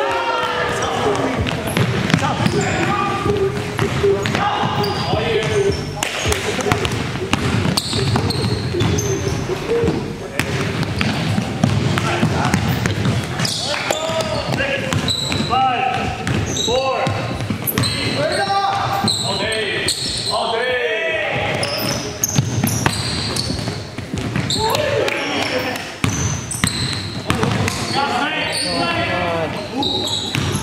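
Basketball game on a hardwood gym floor: the ball dribbled and bouncing, with players' voices calling out on court.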